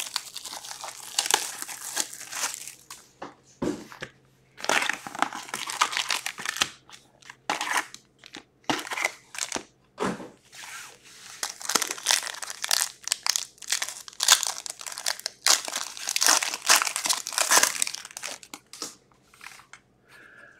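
Plastic shrink wrap crinkling and tearing as it is stripped off a hobby box of hockey cards, then card-pack wrappers crackling and tearing as the packs are handled and opened, in irregular bursts with short pauses. A faint steady low hum lies underneath.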